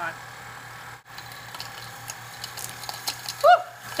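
A small home cotton candy maker running: its motor gives a steady low hum, with faint light ticks over it.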